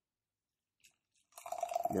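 Near silence with a single faint click just under a second in, then a person starts speaking near the end.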